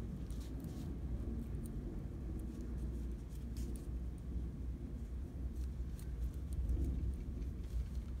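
Soft, scattered rustles and ticks of yarn and a tapestry needle being worked through crocheted fabric by hand, over a steady low hum.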